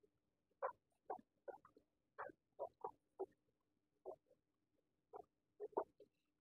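Near silence: faint room tone, broken by about a dozen short, faint sounds at irregular intervals.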